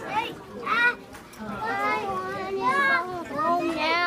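Young children's voices calling out and chattering in a classroom, with no clear words.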